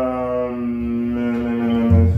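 A man's long drawn-out "ummm" hum, held at one steady pitch and sinking slightly, then breaking off near the end: a hesitation sound while he searches for a Bible verse.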